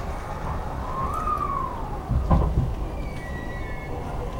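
Inside an E233-series electric commuter train as it starts to move: a steady low rumble with an electronic whine that rises and then falls in pitch, a loud low thump a little past halfway, and short higher tones near the end.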